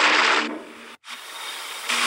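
Studio audience laughter and applause fading out about half a second in, followed by a brief dropout and a faint hiss.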